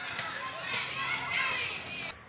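Children's voices and chatter in the background, with no clear words.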